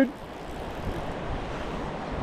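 Steady, even rushing of a river running high after heavy rain, water flowing past rock ledges.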